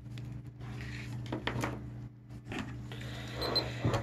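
Faint handling sounds: a few light knocks and rustles as gloved hands pick up a small handheld tester, over a steady low hum.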